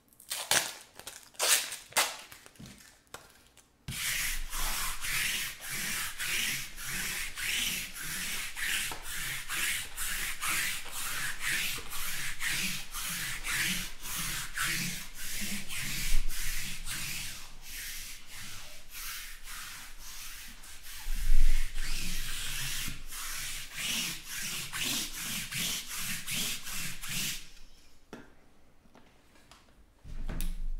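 A few light clicks, then steady rhythmic rubbing or scratching strokes, about two a second, that stop shortly before the end.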